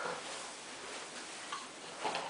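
A baby being spoon-fed, with a few faint clicks of the spoon and the baby's mouth, one about one and a half seconds in, over quiet room noise.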